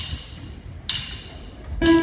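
Two sharp percussive clicks about a second apart, counting the song in, then near the end the band comes in with a held chord.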